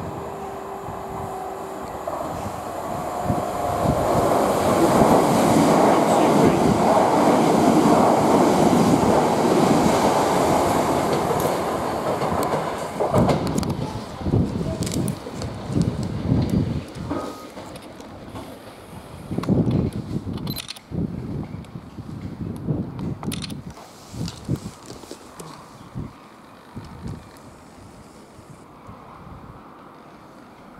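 Southern Class 377 Electrostar electric multiple unit passing through at speed without stopping. Its rumble swells to a peak about five to eleven seconds in, then fades as it draws away. As it goes, a run of irregular clatters comes from its wheels crossing the pointwork and rail joints.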